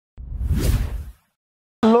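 A whoosh transition sound effect about a second long, a deep rumble under a hiss that swells and then cuts off, followed by a short silence.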